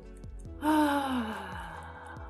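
A person's voiced, sighing exhale, a breathy 'ah', starting about half a second in, its pitch falling as it fades over about a second. It is a deliberate tension-releasing breath. Soft background music with a steady beat runs underneath.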